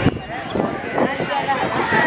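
Crowd of people talking at once, many voices overlapping, with a sharp click right at the start and a brief dip in level after it.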